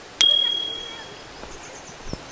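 A single bright bell ding about a fifth of a second in, ringing out and fading over about half a second. It is the notification-bell sound effect of a subscribe-button overlay.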